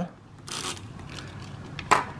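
A metal test probe scraping briefly across the pins of a flip-dot display's connector about half a second in, to energize the dots' coils. A single sharp click comes just before the end.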